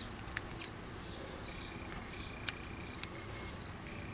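Faint clicks and light handling noise of thread and seed beads being worked by hand, with two small sharper clicks, one about half a second in and one about two and a half seconds in. A faint, thin, high steady tone sounds through the middle.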